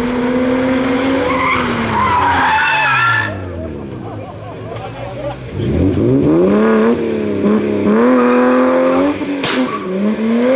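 BMW E30 3 Series saloon engine revving hard through a hairpin: the pitch falls as the driver lifts off about a second in, then climbs again on full throttle about halfway through and stays high, with the tyres squealing as the car slides sideways. A short sharp crack comes near the end.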